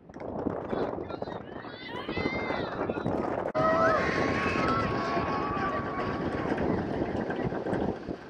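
Spectators and players shouting and calling at a soccer match. About three and a half seconds in, the sound breaks off suddenly and comes back as a louder crowd murmur, with one voice holding a long call.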